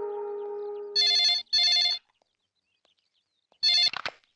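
Landline telephone ringing in a double ring: two short rings about a second in, then another ring near the end. A held note of background music runs under the start and ends as the ringing begins.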